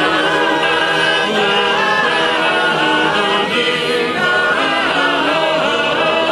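Large male chorus singing trallalero, the Genoese polyphonic a cappella folk song, many voices holding long notes in close harmony without a break.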